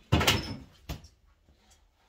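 A sudden household clatter, a knock with a short scrape that lasts about half a second, then one sharp click a little before a second in.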